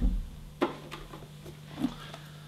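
Three light knocks as small trays are set down and handled in a plastic freezer drawer, one near the start, one about half a second in and one near the end, over a steady low hum.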